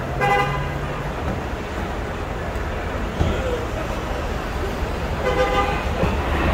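Two car-horn honks, each just under a second long, one just after the start and one about five seconds in, over steady traffic noise at a busy curb.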